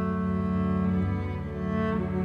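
Solo cello played with the bow: slow, sustained notes, with a change of note a little over a second in.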